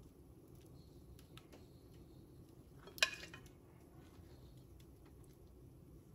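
Faint clinks and scrapes of a metal spoon against a plate and container as refried beans are spooned onto taco shells, with one sharper clink about three seconds in.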